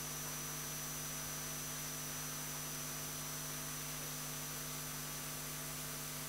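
Steady electrical mains hum with a faint high whine and hiss from the sound system or recording line, with no voice and no room sound in it.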